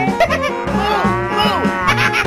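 Cow mooing, a few falling calls in the middle, over background music with a steady beat.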